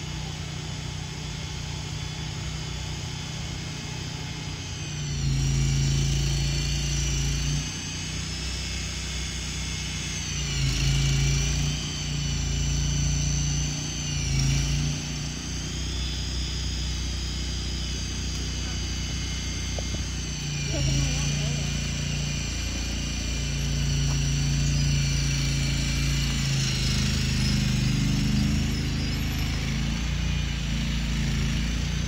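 Small engine of a walk-behind building mover running as it pushes a portable building. It revs up and eases off several times, with a high whine that dips and recovers in pitch each time the load comes on.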